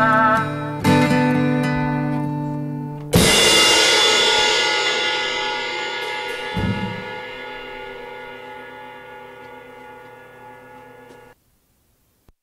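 The closing bars of an indie folk-rock song: sustained, wavering guitar chords, then a final chord struck with a cymbal crash about three seconds in. The crash rings out and slowly fades before cutting off suddenly near the end.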